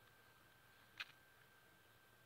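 Near silence: room tone, with one short faint click about a second in.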